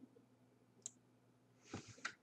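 Near silence with a single faint computer mouse click about a second in and a short soft noise near the end.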